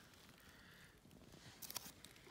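Near silence: faint outdoor ambience, with a few soft crackles about one and a half seconds in.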